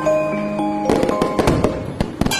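Firecrackers going off in a quick string of sharp pops about halfway through, over music with long held notes.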